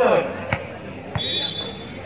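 A volleyball bounced twice on the hard court, about half a second apart, as a player readies to serve, followed by a short high steady whistle that signals the serve.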